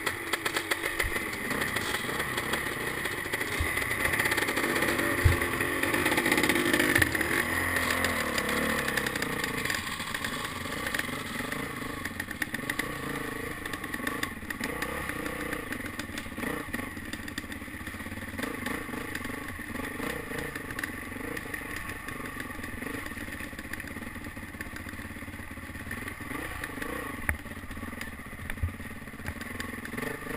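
Dirt bike engine running under changing throttle while the bike is ridden over rough ground, rising in pitch over the first several seconds, with knocks and clatter from the bike. A sharp knock about five seconds in is the loudest sound.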